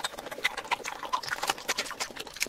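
Close-miked eating sounds of seafood being chewed: a quick, dense run of wet clicks and crunches.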